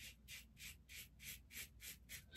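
Goodfellas' Smile Syntesi stainless steel safety razor scraping stubble through shaving lather in short, quick, faint strokes, about three a second.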